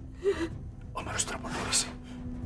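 A person gasping: a short voiced catch of breath, then two sharp breathy gasps about a second in, the second one the louder.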